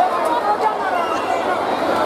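Indistinct chatter of many voices talking at once, a steady murmur with no single clear speaker.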